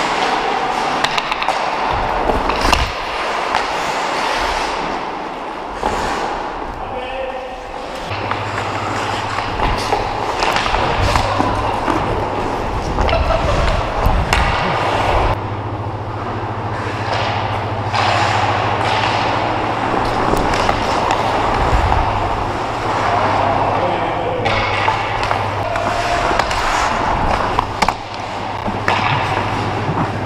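Ice hockey skates scraping and carving the ice, with frequent clacks and thuds of sticks, puck and boards, close to a helmet-mounted camera; players' voices call out now and then. A steady low hum comes in about eight seconds in.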